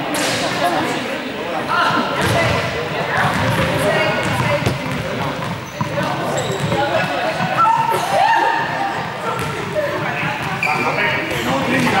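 Balls bouncing and thudding on a sports-hall floor now and then, among the overlapping chatter of a group of people, with the echo of a large hall.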